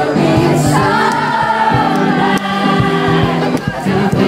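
Background music: a song with singing over a steady beat.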